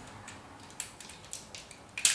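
Light plastic clicks and ticks from transforming robot toy parts being handled and fitted together: several short clicks as the pieces are pushed into place and locked.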